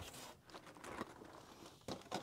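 Faint rustling and a few light knocks of cardboard kit boxes and packaging being handled, with a slightly sharper knock at the very end.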